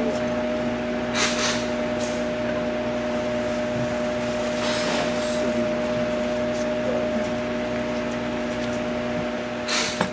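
A steady electric motor hum holding several fixed pitches at an even level, with a few brief rustles: about a second in, around the middle and just before the end.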